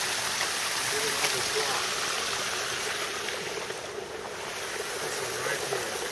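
Small mountain stream running steadily down over rocks.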